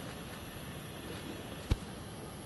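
Steady outdoor background noise with one sharp click about three-quarters of the way through.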